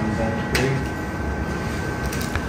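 Stellaris Elite phacoemulsification system working during cataract lens removal: a constant hum of fluid being infused into and vacuumed from the eye, under a steady electronic tone whose pitch tracks the vacuum level. The tone steps down to a lower pitch about half a second in, where there is also a short click.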